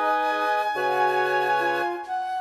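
Software playback of a wind quintet score: the flute holds a long high note over sustained chords in the lower winds, which change chord about three-quarters of a second in.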